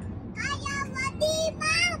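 A young child's high voice singing in a sing-song way: several short notes, then a couple of longer held notes near the end, over the low steady road noise inside a moving car.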